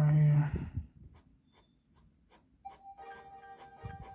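Fine-tip ink pen (Sakura Pigma Micron 003) stroking on a sketch card, faint quick scratchy ticks. A brief voice sounds at the start, and music comes in about three seconds in.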